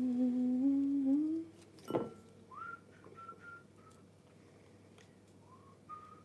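A person hums one held note that rises near its end. A short knock follows, then soft whistling of several short notes.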